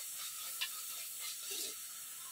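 Food frying in oil in a pan over a wood fire, a steady sizzle with a light tap or scrape of the metal spatula about half a second in.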